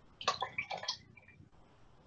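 A paintbrush swished in a pot of painting water: a few quick splashy swishes within the first second, then a faint drip.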